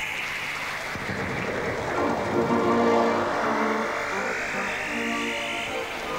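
A brass fanfare on herald trumpets, coming in about two seconds in with held notes. It plays over a sweeping electronic tone that starts suddenly, dips in pitch and then climbs again.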